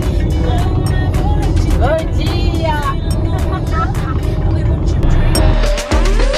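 Steady road and engine noise inside a moving car's cabin, with women's voices over it.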